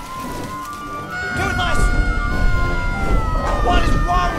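Orchestral film score with long held high notes. Its low end swells about a second in, and brief voice-like calls sound over it near the middle and end.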